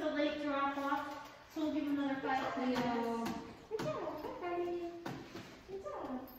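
Puppy whining: long drawn-out cries that waver and slide in pitch, with a few short clicks between them.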